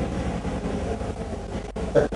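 Steady background noise with no voice, a room hum and hiss, that cuts out completely for an instant near the end.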